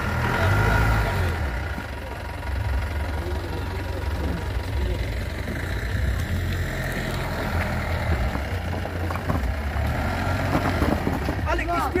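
Mahindra Bolero SUV engine running with an uneven low rumble that swells and eases, with people's voices in the background and a sharper exclamation near the end.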